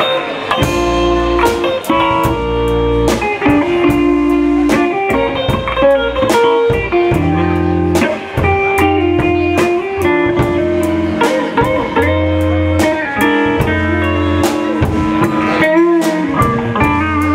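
Live rock band playing: two electric guitars over a drum kit, with drum and cymbal hits keeping a steady beat.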